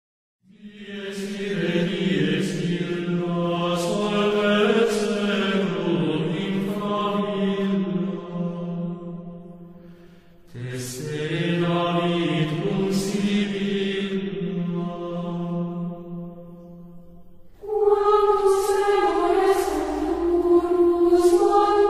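Chanted singing with held notes, in two long phrases of about seven to nine seconds each, with a brief dip between them. A louder, higher-pitched phrase begins near the end.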